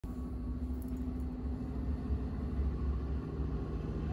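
Low, steady rumble of room background noise with a faint hum, before any keyboard notes are played.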